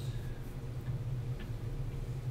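Room tone: a steady low hum, with a faint click or two.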